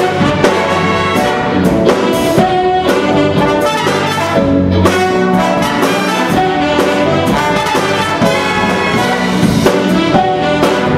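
Big band playing a funk number live: trumpets, trombones and saxophones over drums, bass and keyboards, with a steady beat.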